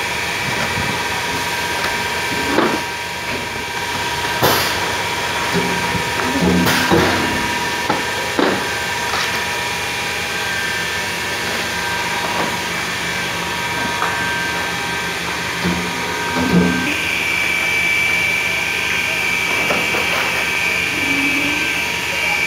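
Semi-automatic blister sealing machine and workshop machinery running with a steady hum, broken by several sharp knocks and clacks as tray frames are handled in the press. A steady high whine sets in about three-quarters of the way through.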